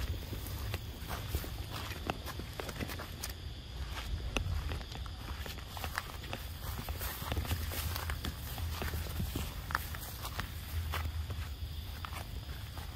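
Footsteps on a gravelly dirt path: irregular soft crunches and small clicks over a low rumble.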